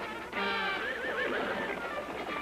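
A horse whinnying about a third of a second in, a wavering call of about a second, over background music.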